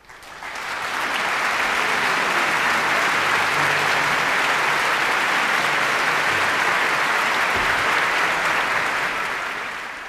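Concert-hall audience applauding, breaking out from silence and swelling within about a second to full, steady applause that eases off near the end.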